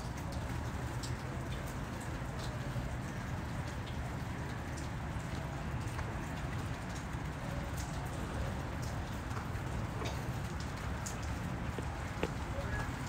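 Steady water noise from a running 300-gallon reef aquarium's circulation, an even trickling rush with scattered faint drip-like clicks over a low hum.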